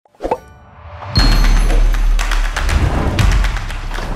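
Intro sting for an animated title. A short pop, then a rising whoosh that breaks into a loud hit about a second in. This leads into music with deep bass and many quick, sharp percussive clicks.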